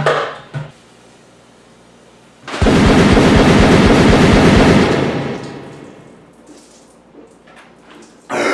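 A short laugh, then about two and a half seconds in a loud rushing, glugging pour as a large protein tub is tipped up and chugged from, fading away over the next second or two.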